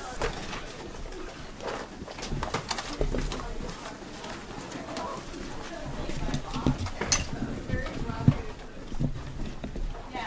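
A class of students getting up and leaving a classroom: chairs and desks knocking and scraping, footsteps and bags shuffling, with indistinct chatter. A sharp knock stands out about eight seconds in.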